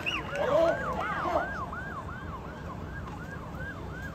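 A siren sounding a fast yelp, its pitch sweeping up and down about three to four times a second and growing fainter.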